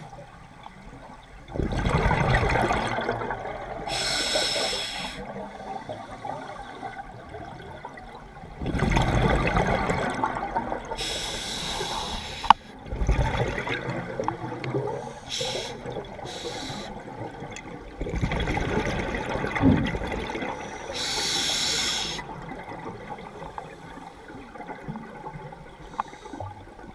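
Scuba regulator breathing heard underwater: about three breath cycles, each a gurgling rush of exhaled bubbles and a hiss of drawn air. A single sharp click comes about halfway through.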